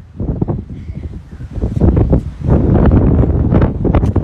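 Strong wind buffeting a phone's microphone in gusts, a loud low rumble that swells about halfway through.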